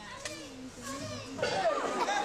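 Children's voices talking and calling out, the words unclear, getting louder near the end.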